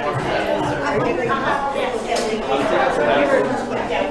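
Indistinct chatter of many people talking at once, a room full of overlapping conversations.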